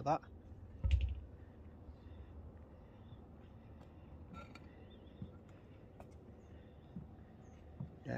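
Handheld phone carried by someone walking outdoors. A low handling bump comes about a second in, then quiet open-air ambience with a few faint ticks.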